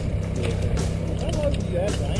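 Steady low motor hum on a boat, with indistinct voices over it.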